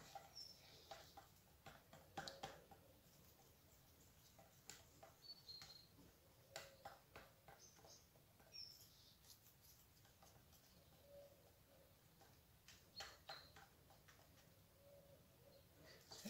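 Near silence with faint, irregular clicks and scrapes of a stir stick working runny white acrylic paint mix in a plastic cup, and a few brief, faint high squeaks.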